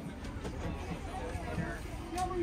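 Indistinct voices of people talking, with a steady low rumble underneath.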